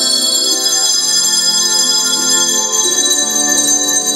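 A handbell choir ringing small colour-coded handbells in a tune, several bell notes sounding and ringing on together.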